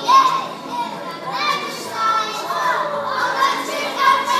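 Many young children's voices at once, with pitches that swoop up and down and overlap, some rising to a brief loud peak just at the start.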